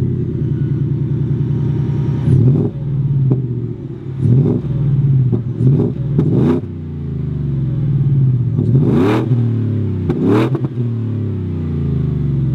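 Whipple-supercharged 5.0 L Coyote V8 of a Ford F-150 idling through an MBRP aftermarket exhaust, loud and steady, with about six quick blips of the throttle that rise and fall back to idle.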